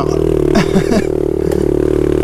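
Honda CRF70 pit bike's small single-cylinder four-stroke engine running at a steady speed on a dirt trail, with a few brief knocks about half a second in.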